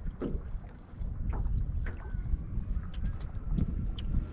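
Wind buffeting the microphone in a steady low rumble, with water lapping and light knocks against the hull of a small metal boat.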